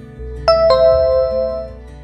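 Two-note electronic ding-dong chime, a higher note then a lower one, ringing out for about a second over soft background music. It is the quiz's answer-reveal chime.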